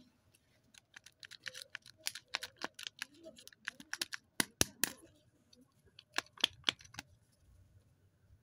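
Rapid, irregular clicks and crackles of a plastic Kinder Joy egg and sweet wrappers being handled in the fingers, loudest about halfway through.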